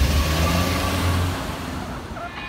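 A Volkswagen New Beetle's engine and tyres as the car pulls away, the sound fading steadily as it drives off.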